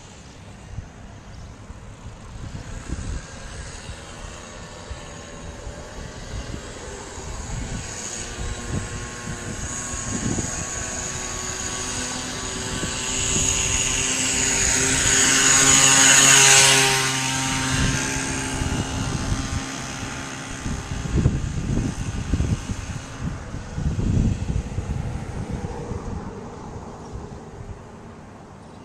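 Small two-stroke engine of a motorized bicycle running at a steady pitch as it rides up and passes close by. Its buzz grows to a peak about two-thirds of the way through, then fades as it moves away, with wind buffeting the microphone.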